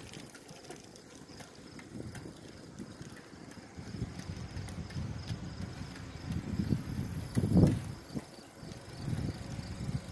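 Wind buffeting the microphone of a moving bicycle, an uneven low rumble, with a stronger gust about seven and a half seconds in.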